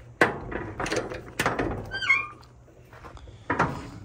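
Steel shipping-container door being unlatched and swung open: metal clanks from the locking bar and door, the first the loudest, and a short high squeak about two seconds in.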